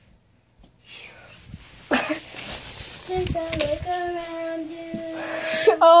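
A young child's voice holding one long steady note for about two and a half seconds, starting about three seconds in, after a short stretch of rustling and a sharp knock.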